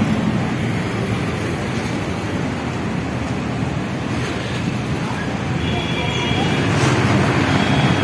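Steady street traffic noise with wind rumbling on the phone's microphone, and a faint high tone briefly about six seconds in.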